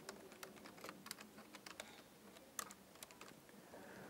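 Faint typing on a computer keyboard: a run of short, irregularly spaced keystrokes.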